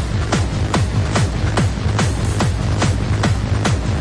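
Hardstyle dance music: a kick drum about every 0.4 s (roughly 140 beats a minute), each kick dropping sharply in pitch, over a steady bass with little melody.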